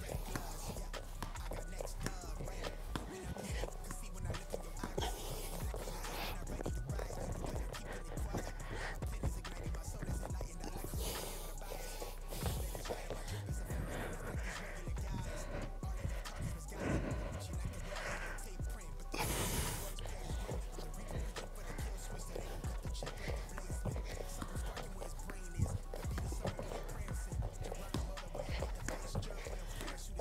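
Quick, irregular thuds of trainers and hands landing on an exercise mat, with hard breathing from a man doing fast bodyweight exercises. A brief louder burst of noise comes about two-thirds of the way through.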